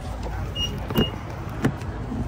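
Car door being unlatched and opened: two sharp clicks about two-thirds of a second apart, the first louder, with two brief high beeps just before the first, over a low steady rumble.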